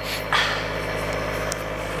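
Cystic fibrosis breathing-treatment equipment running with a steady mechanical drone, with a short breathy hiss just after the start.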